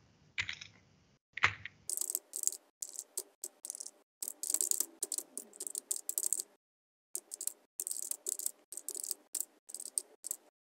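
Typing on a computer keyboard: quick runs of key clicks begin about two seconds in and go on with short pauses between them.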